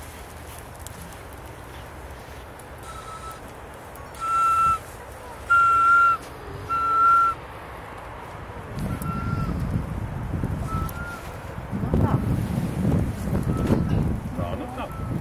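A series of whistled notes, each about half a second long and all at much the same steady pitch, the loudest three falling between about four and seven seconds in. From about the middle on, wind rumbles on the microphone.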